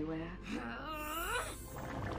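A person's voice in a drawn-out moan whose pitch rises and falls, from about half a second in to about a second and a half in.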